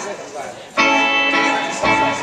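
Live band starting a song, led by strummed guitar chords: a fresh chord is struck about three-quarters of a second in and rings on, with another accented hit near the end.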